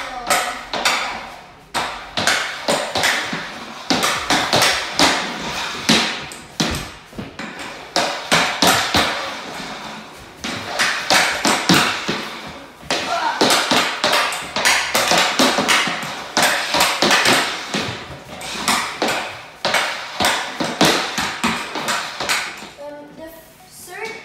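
A hockey stick blade rapidly and irregularly clacking against a stickhandling ball and the hard laminate floor during a stickhandling drill, with short lulls every couple of seconds.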